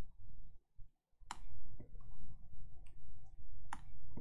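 Sharp clicks from drawing input on a computer: two loud ones about a second in and near the end, with a few fainter ones between, over a low steady background rumble.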